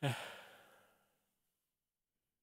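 A single sigh that starts suddenly, falls in pitch at its onset and fades out over about a second.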